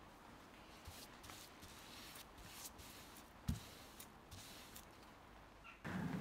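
Very faint brushing and handling sounds of a paintbrush working tung oil onto an oak box, soft scattered scrapes and ticks, with one light knock about three and a half seconds in.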